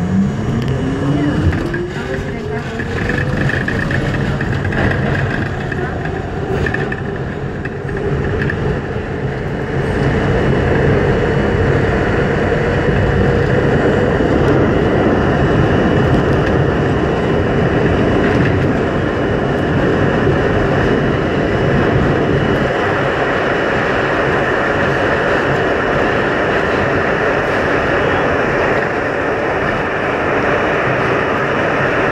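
R42 subway train's traction motors whining and rising steadily in pitch over the first few seconds as the train pulls away from the platform and accelerates. A loud, steady rumble of wheels on rail in the tunnel then takes over, growing louder about ten seconds in.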